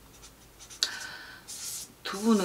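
Pen scratching on paper as someone writes, starting suddenly about a second in and continuing in short strokes.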